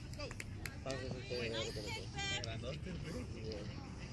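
Voices shouting across a youth soccer field, with one high-pitched shout a little after two seconds in, over a steady low outdoor rumble.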